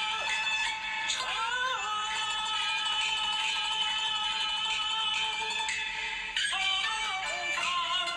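A song playing: a sung voice holding one long, wavering note from about two seconds in until about six seconds, then moving on to shorter notes over the backing music.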